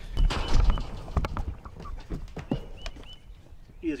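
Camera handling noise as the camera is set down, then scattered knocks and scuffles as a sheep is caught and lifted in a straw-bedded pen.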